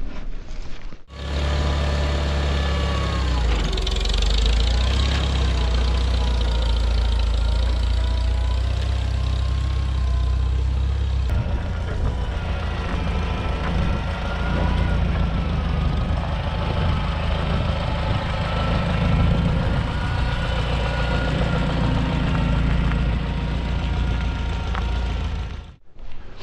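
Engine of a vehicle hauling a trailer load of scrap lumber, running steadily with a deep rumble and a faint wavering whine above it.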